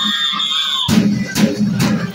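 School marching drumline: the drums pause while a single high, steady tone holds for about a second, then the drums come back in about a second in, with strokes two to three times a second.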